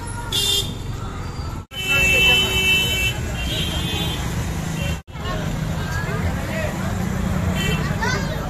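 Busy outdoor street-fair hubbub: crowd chatter over a steady background din, with several short, high-pitched horn toots. The sound cuts out abruptly twice, about two seconds in and again at about five seconds.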